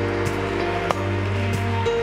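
Keyboard playing long held chords over a steady deep bass note, moving to a new chord near the end, with a congregation clapping under it.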